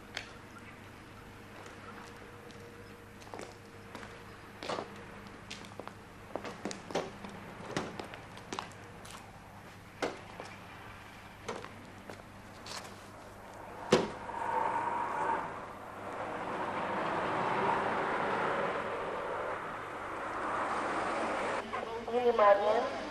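Footsteps and light knocks around a car, then a car door slams shut about fourteen seconds in. A steady engine and road noise follows, swelling and then easing off as the car pulls away.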